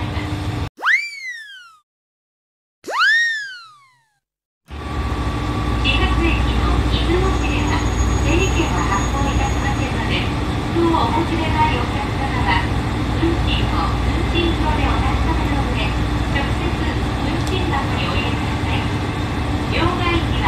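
Two added cartoon "boing" sound effects, each a pitch sweep that rises fast and falls away, over a silent gap. Then a steady low rumble and hum inside a train carriage, with small knocks and faint voices.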